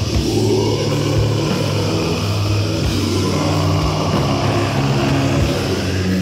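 Death metal: heavily distorted guitars holding low, sustained chords over drums.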